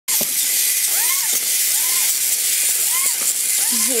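A small battery-powered toy robot running on a hard floor: a steady loud hiss with a whine that rises and falls in pitch about once a second.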